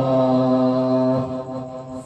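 A male qori's voice in melodic Quran recitation (tilawah), amplified through a microphone, holding one long steady note that breaks off near the end.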